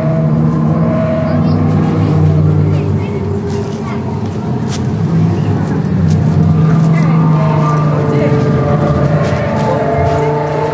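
Indistinct voices over a low droning hum that fades for a few seconds in the middle.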